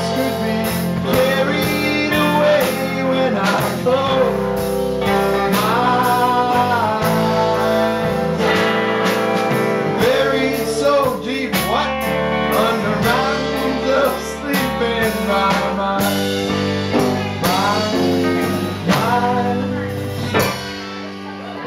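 Live blues-rock band playing an instrumental break on electric guitars and drum kit, with a lead line bending up and down in pitch over a steady beat.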